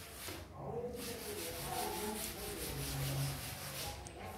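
A chalkboard duster rubbing back and forth across a blackboard, wiping off chalk writing. The scraping strokes break off briefly about half a second in, then carry on.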